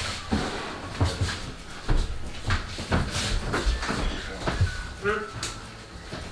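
Irregular knocks, taps and rustling from someone handling things at a desk, with a brief voice sound about five seconds in.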